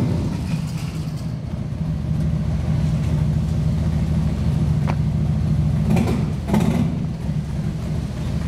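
Motorcycle engine idling with a steady low rumble, with a couple of short knocks about five and six seconds in.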